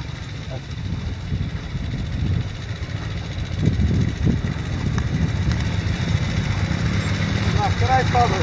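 Several dual-sport motorcycles, among them a Honda Africa Twin, running downhill toward the listener, their engines getting steadily louder as they approach.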